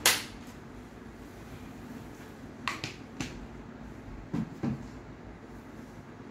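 A baby gnawing and mouthing a Japanese baby biscuit: a sharp click at the start, a couple of smaller clicks about halfway through and two soft knocks a little later, over a low steady hum.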